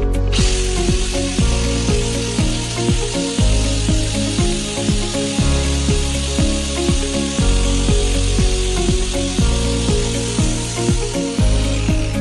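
Small angle grinder with a red abrasive disc running against a metal pan lid, a steady high-pitched hiss that starts just after the beginning and stops shortly before the end. Background music with a steady beat plays throughout.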